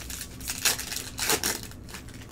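A 2021-22 Panini Elite trading card pack wrapper being torn open and handled, with two loud crackling bursts about half a second and a second and a quarter in.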